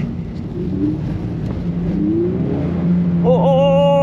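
Toyota 86's flat-four engine pulling under throttle on a wet track, rising briefly in pitch about two seconds in and then holding a steady note. The car is on eco tyres that keep losing grip in the rain.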